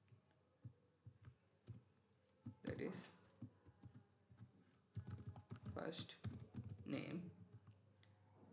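Faint typing on a computer keyboard: scattered single keystrokes, then a quicker run of them from about five to seven seconds in.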